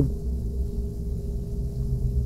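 Steady low background rumble with a faint, even hum above it.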